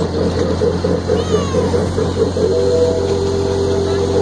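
Pickie Puffer miniature ride train running, with a steady low hum and a warbling tone that pulses about three times a second; about two and a half seconds in, a steady high-pitched squeal of several tones sets in.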